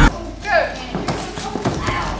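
Sparring on a mat: irregular short thuds and knocks of feet and strikes, with a short voice call about half a second in.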